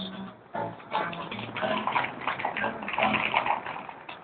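Solo guitar playing the blues, chords strummed in short repeated strokes.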